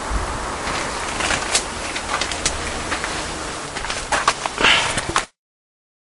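Steady outdoor hiss with rustling and scattered sharp clicks, like a hand-held camera and the leaves in hand being handled. It cuts off abruptly to dead silence about five seconds in.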